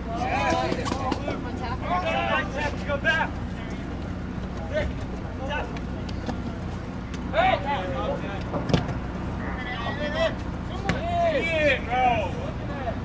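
Scattered voices of soccer players and spectators calling out, heard over a steady low rumble. One sharp knock comes about three-quarters of the way through.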